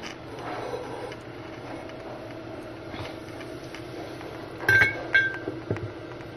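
Two short clinks about half a second apart, near the end, as a ceramic wax warmer is set down onto its base, each with a brief ring; otherwise quiet room tone with a faint steady hum.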